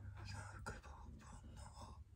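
A man whispering faintly under his breath, with one short click in the middle.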